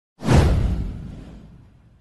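A deep whoosh sound effect from an animated intro sting. It starts sharply a fraction of a second in and fades away over about a second and a half.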